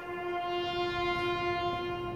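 A remembrance bugle call, the bugler holding one long steady note that breaks off briefly near the end.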